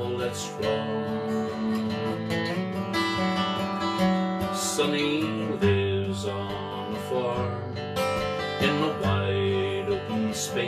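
Steel-string acoustic guitar strummed, chords ringing on between strokes, in an instrumental passage between sung lines of a folk song.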